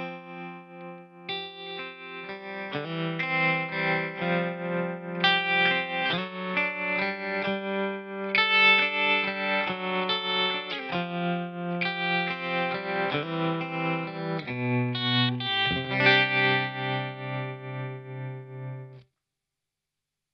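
Electric guitar chords played through a TC Electronic Pipeline tap tremolo pedal, the volume pulsing rhythmically at the tapped tempo. The playing cuts off suddenly near the end.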